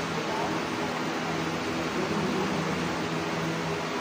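Steady mechanical hum of a fan-driven machine, several low tones held over an even whir, with faint indistinct voices now and then.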